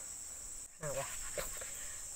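Steady high-pitched drone of insects, which drops out for a moment just before a second in.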